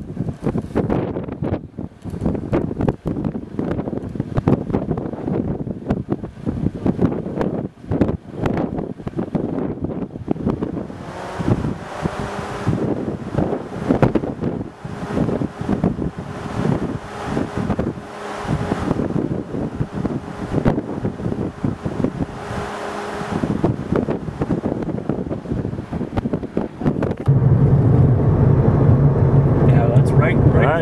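Wind buffeting the microphone in rough, irregular gusts. About three seconds before the end it gives way to steady, louder low road and engine noise from inside a moving car.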